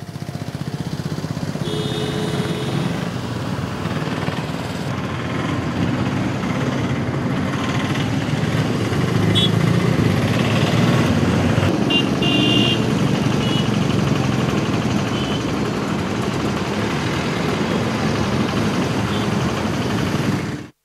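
Steady rumble of engines with outdoor harbour noise, and a few brief high tones about two seconds in and again around twelve seconds.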